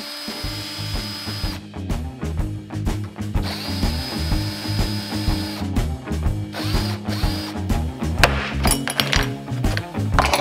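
Cordless drill whining in three short runs as it backs screws out of a small engine's plastic air-filter base, over background music with a steady beat.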